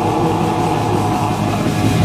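Heavy metal band playing live, loud and without a break: electric guitar, bass guitar and drum kit.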